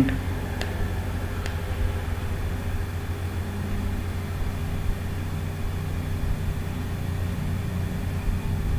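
Steady low hum with a light hiss, the background noise of the recording, with two faint clicks in the first two seconds.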